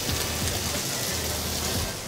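Egg fried rice sizzling steadily in a hot wok.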